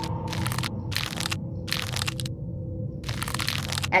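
Cartoon soundtrack: about five short bursts of rough crackling noise, two close together in the middle and the last the longest, over a low steady hum.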